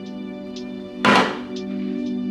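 Instrumental background music with sustained notes. About a second in comes a single short thunk of an item being set down in a refrigerator door shelf.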